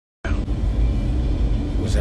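Steady low rumble of a moving van's engine and road noise heard inside the cabin, starting about a quarter second in.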